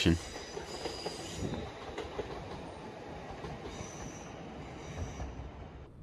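Passenger train running past on the railway, a steady rumble of wheels on rail with thin high wheel squeals coming and going a few times.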